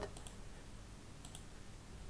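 Faint computer mouse clicks: two short pairs of clicks about a second apart.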